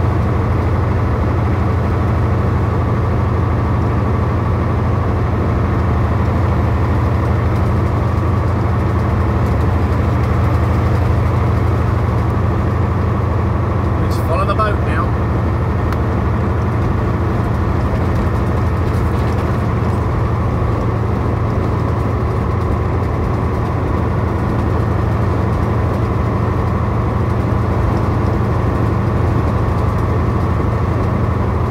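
Steady drone of a heavy truck's engine and road noise heard from inside the cab at highway cruising speed, with a brief squeak about halfway through.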